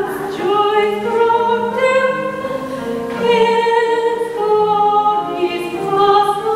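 A woman singing a slow song with piano accompaniment, each sung note held and gliding into the next over lower sustained piano notes.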